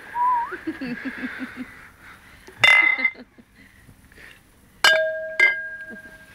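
Heavy glass beer mugs clinking together in a toast: one loud clink about halfway through, then two more clinks near the end whose ring hangs on as a clear steady tone.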